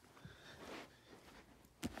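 Near silence: a faint breath, then a single short click near the end.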